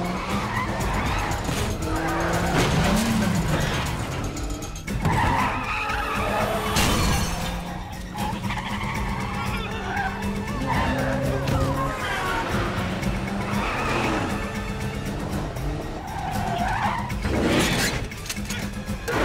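Film car-chase sound mix: car engines running hard and tyres skidding, over a film score of held notes.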